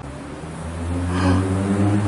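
A motor vehicle's engine running with a steady hum, growing louder over the first second or so and then holding.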